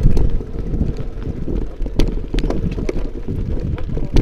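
Wind buffeting an action camera's microphone: a dense low rumble, with a few sharp clicks scattered through it.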